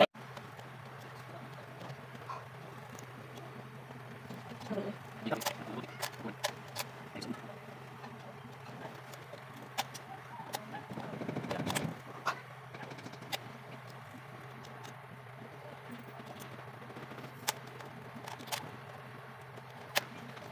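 Scattered sharp clicks and scrapes of thin tin-can metal being cut and bent with pliers, with a longer scraping rustle about halfway through. A steady low hum runs underneath.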